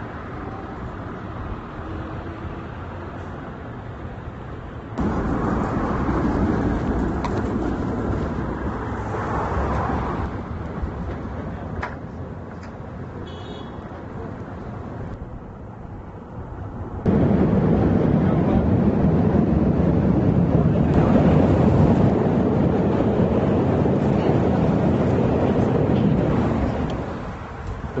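Steady outdoor background noise with street traffic. It jumps abruptly in level several times, louder from about five seconds in and loudest from about seventeen seconds in.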